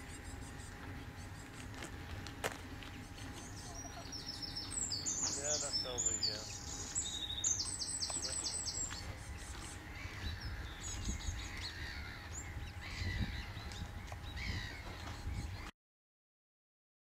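Songbirds singing: fast runs of high repeated notes from about four to nine seconds in, then softer scattered calls, over a steady low rumble. The sound cuts off suddenly just before the end.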